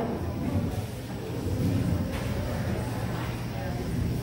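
Indistinct voices of people talking in a large hall over a steady low hum, with no music playing.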